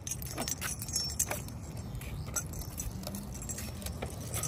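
A few light clicks and clinks scattered over a low, steady rumble.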